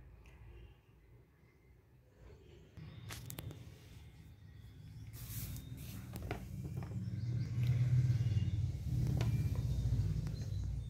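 Low, uneven rumbling handling noise on the phone's microphone as the camera is moved, starting a few seconds in and growing louder, with a few faint clicks. The bell buzzer is not sounding.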